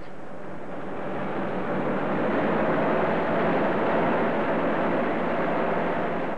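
Sound effect of a car being driven fast, flat out. The engine and road noise swell over the first couple of seconds and then run on steadily.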